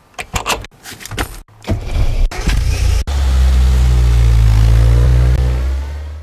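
A car door handle and door click and knock. Then a classic Mini's engine starts and runs loud and steady, revving as the car pulls away, and the sound cuts off suddenly near the end.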